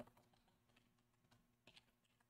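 Near silence with a few faint computer keyboard keystrokes, one slightly louder click at the very start.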